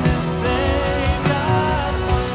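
Live worship band playing a contemporary worship song: electric guitars and drums under a sung melody.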